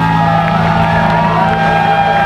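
Live instrumental rock band: electric guitar holding long, bending high notes over a steady held low bass note.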